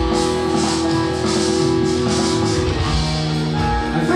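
Instrumental passage of a rock song: keyboards played live over a pre-recorded backing track, with held chords and a steady cymbal-like beat.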